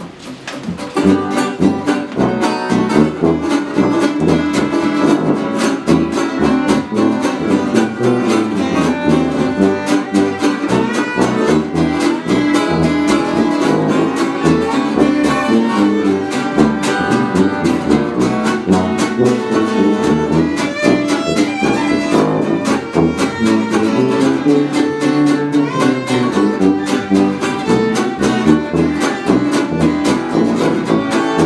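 A small acoustic jazz band of fiddle, acoustic guitar, a second guitar and tuba playing an old-time hot-jazz number, starting about a second in with a steady strummed beat.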